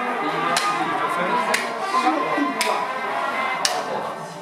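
Music with sustained tones, marked by a sharp percussive click about once a second.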